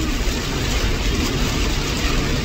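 Steady road noise inside a moving SUV's cabin in the rain: low engine and tyre rumble under an even hiss from the wet road and rain.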